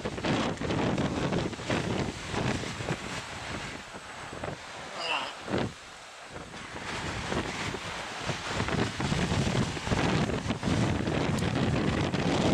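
Wind buffeting the microphone in uneven gusts, easing off around six seconds in and building again afterwards.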